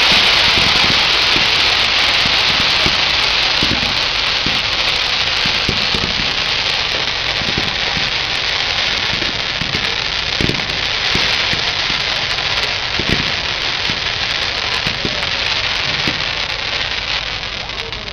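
Ground fireworks fountains and crackle effects burning: a dense, steady crackling hiss with occasional dull thumps, slowly fading toward the end.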